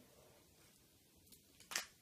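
Plastic shrink-wrap on a headphone box being worked at and torn open: faint rustling, then one short, sharp rip near the end as the wrap gives way.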